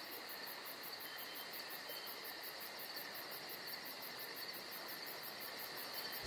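Faint, steady chirring of insects, an even high-pitched drone without breaks.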